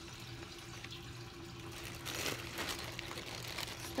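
A plastic zip-top bag of clear slime being handled: soft crinkling of the plastic with wet squishing from the slime inside, busier in the second half.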